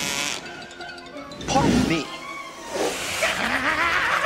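Film score music with two short non-word vocal cries from cartoon characters, about a second and a half in and again near three seconds.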